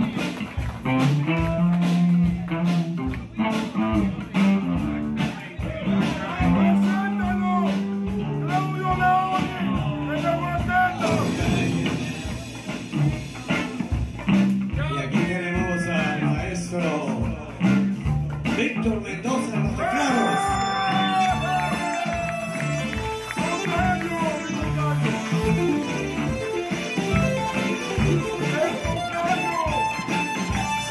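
Live rock band playing a blues-style instrumental passage: electric bass and drums keeping a steady beat under an electric guitar lead with sliding, bent notes.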